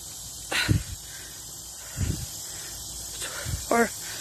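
A person breathing hard while walking, with three breaths close to the microphone over a faint steady hiss.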